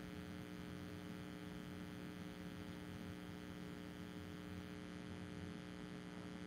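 Faint, steady electrical hum with a few fixed tones over a light hiss; no brush strokes or other events stand out.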